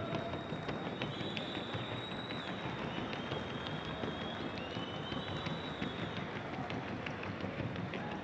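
Rapid, even hoofbeats of a Colombian Paso Fino mare moving in the trocha gait on the show track, over a steady background hum, with thin high tones wavering above.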